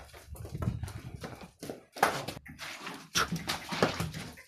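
Hooves of a young bull striking the hard barn floor as it is led walking: a few irregular knocks, the sharpest about two seconds in and near the end.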